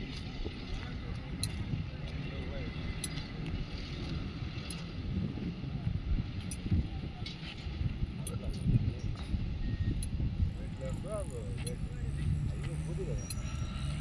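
Low steady rumble with faint voices of people talking, and a few light clicks.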